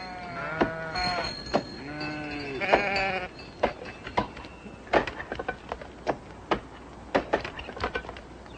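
Animals bleating several times, each call bending in pitch, followed by a run of irregular sharp knocks of axes chopping timber.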